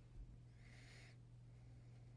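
Near silence: a steady low hum, with a brief soft hiss lasting about half a second near the middle.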